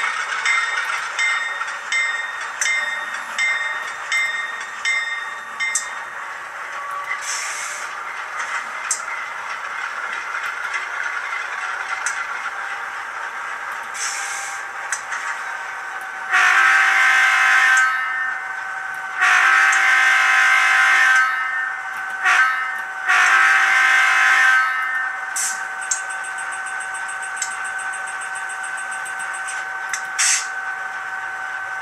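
ESU LokSound decoder playing its GE 7FDL-16 diesel sound file (late exhaust) through a small speaker in an N scale Atlas Dash 8 model: the diesel engine sound runs steadily, loud for such a small speaker. About halfway through the horn blows four times, long, long, short, long.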